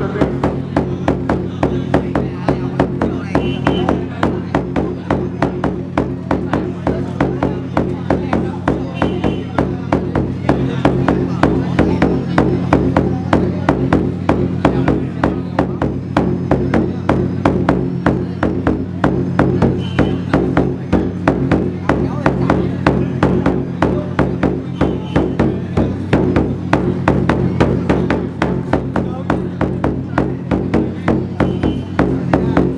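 Drumming that accompanies a traditional Vietnamese wrestling bout: fast, even beats that never stop, over a steady low drone.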